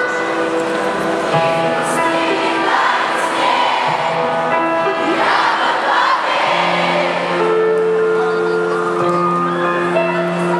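Live pop song played through an arena sound system, with a large crowd singing along in chorus. The crowd's cheering swells briefly twice, about three seconds in and again around five to six seconds.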